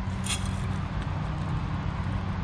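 Steady drone of a lawn mower engine running. About a quarter second in comes a brief dry rustle of zinnia seed heads being crumbled into a dish.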